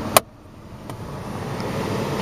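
A single sharp click from the centre-console storage cover, then a steady rushing noise, likely the car's ventilation fan, that slowly grows louder.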